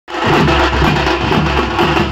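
Street drum band: several strapped double-headed drums beaten together with sticks and hands in a loud, fast, dense rhythm, with deep bass-drum booms underneath.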